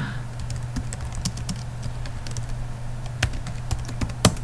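Typing on a computer keyboard: a run of irregular key clicks, a few of them louder, over a steady low hum.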